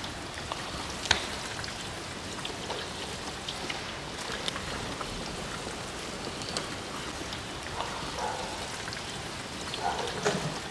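Steady rain falling, with scattered small drip ticks.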